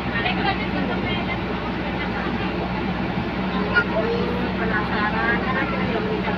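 Indistinct chatter of passengers inside a moving bus, over the steady low hum and road noise of the bus driving.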